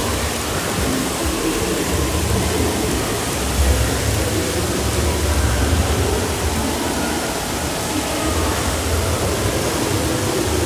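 Steady rush of falling and spraying water from an indoor water park's play structure, with a deep rumble underneath and no breaks.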